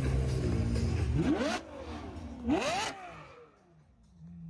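Ferrari 812's naturally aspirated V12 blipped twice, about a second apart, the pitch shooting up and falling back each time. It fades away near the end.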